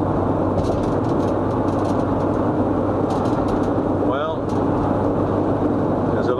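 Steady road and wind noise inside a moving car's closed cabin, with a low, even engine hum underneath.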